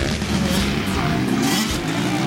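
Motocross dirt bike engine revving up and down, mixed with rock music.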